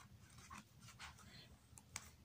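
Near silence with a few faint, brief rustles of a photo book's glossy pages being turned by hand.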